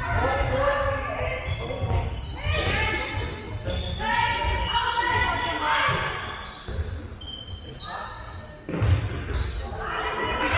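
Handball bouncing on a sports-hall floor amid players' footsteps, with calls and voices echoing in the large hall, and one sharp thud near the end.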